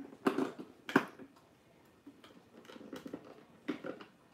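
Small plastic miniature toys clicking and clattering as they are handled and picked out of a hard plastic display tray: a few sharp clicks, the loudest about a second in, then softer light rattles.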